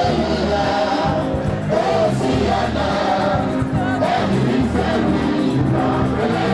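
Gospel choir singing with instrumental accompaniment and a steady low bass underneath.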